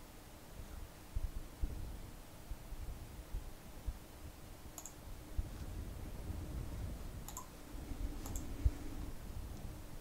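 A few faint, sharp computer mouse clicks spaced a second or two apart, over scattered soft low knocks and a faint steady hum.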